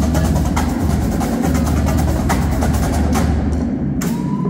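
Marching drumline playing: snare and tenor drums over steady bass drums, with crash cymbals, in a gymnasium. The bright high crashes fall away near the end.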